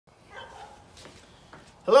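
A man calls out a loud greeting right at the end, after about a second and a half of faint low sounds with a light click about a second in.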